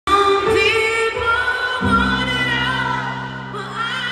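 Live female vocal with grand piano, sung into a handheld microphone in an arena. A low piano chord is struck about two seconds in and held under long, sliding sung notes.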